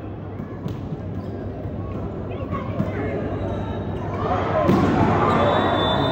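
Volleyball rally in an indoor arena: sharp smacks of the ball being served and hit, over steady crowd noise. The crowd swells into cheering and shouting over the last two seconds as the rally ends in a block.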